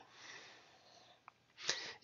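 A man's faint breathing in a pause between spoken sentences: a soft breath out, a tiny click about a second and a quarter in, then a quick, sharp intake of breath near the end.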